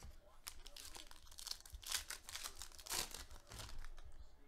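Foil wrapper of a Panini Plates & Patches football card pack being torn open by hand, a run of crinkling and tearing crackles, loudest around the middle and near the end.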